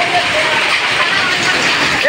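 Heavy rain falling in a steady downpour, a dense, even hiss.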